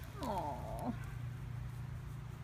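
A domestic cat gives one short meow, falling in pitch and turning up slightly at the end, beginning just after the start and lasting under a second, over a steady low background rumble.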